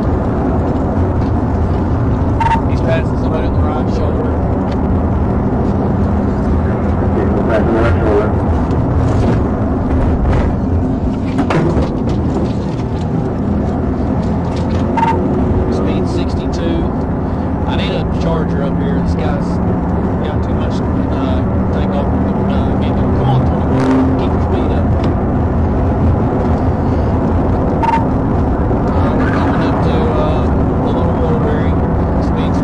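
Steady road, wind and engine noise inside a police cruiser during a high-speed pursuit at roughly 60 to 95 mph, with a low engine drone that stands out in the middle and again later on.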